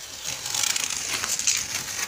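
Continuous crinkling, rustling noise, loudest about halfway through.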